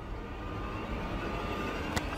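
Dramatic TV background score: a sustained low drone with faint steady high tones, building slightly, ending in a short sharp hit.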